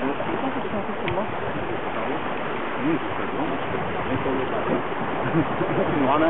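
Steady rushing of water and wind on a sailboat under sail, with faint voices murmuring now and then.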